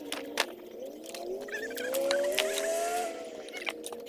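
A motor engine hums in the background, dipping in pitch and then rising steadily for a couple of seconds before settling back to an even tone near the end. Sharp clicks and knocks from wood and debris being handled come throughout, the loudest just under half a second in.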